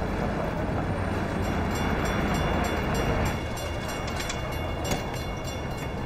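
Steady street noise with a motor car's engine running: a low rumble under a busy hum, with a few light clicks in the second half.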